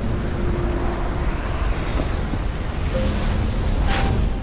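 Steady rushing, wind-like sound effect of a swirling energy aura, ending in a short sharp burst as the figures shoot off as beams of light. Faint music underneath.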